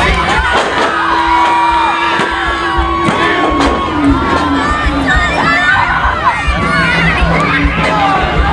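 Crowd of children and adults cheering and shouting, with one voice holding a long shout. A single sharp knock comes about three seconds in, as a wrestler is slammed onto the ring.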